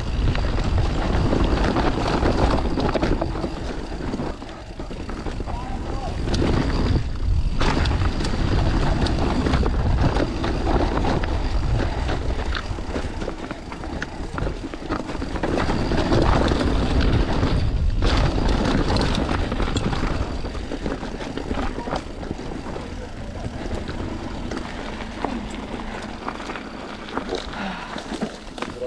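Mountain bike riding fast down a rocky forest trail: tyres rumbling over dirt, stones and dry leaves, and the bike rattling over the bumps. The noise swells and eases with the terrain and grows quieter in the last few seconds, on smoother ground.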